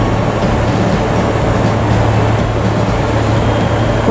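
Steady mechanical drone of a railway station platform: an even rumble with a constant low hum that does not change.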